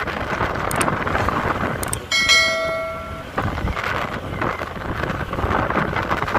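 Wind buffeting the microphone and road noise from a moving motorcycle. About two seconds in, a bell-like chime rings for about a second and fades.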